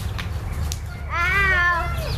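A young girl's wordless drawn-out call about a second in, its pitch rising and then falling, over a steady low background rumble.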